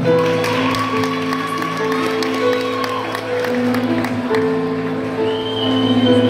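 Live band playing the slow instrumental intro to a song: long held chords that shift every second or so, with a higher held note over the first half and a high held note near the end. Faint crowd noise of a packed club underneath.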